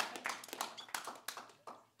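Hand-clapping from a small group of listeners in a small room after a song, the claps thinning out and stopping short just before the end.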